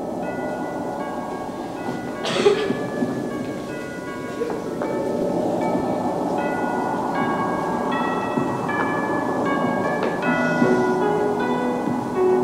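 Piano music, a melody of separate held notes, with lower notes joining near the end, over a steady rumble of movement on a stage floor. There is a knock about two seconds in.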